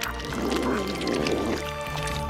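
Background music with steady sustained tones. From about half a second in to about one and a half seconds, a rough, gurgling throat noise: a person hawking up spit.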